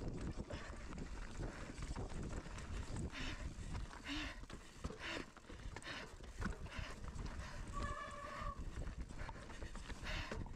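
Mountain bike descending a rocky scree trail from an on-bike camera: the ongoing rumble and rattle of tyres and bike over loose stones, with wind on the microphone. There is a short high squeal near the end, and brief rasping bursts a few seconds in.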